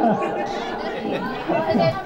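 Crowd chatter: several people talking at once, with one voice coming up more clearly near the end.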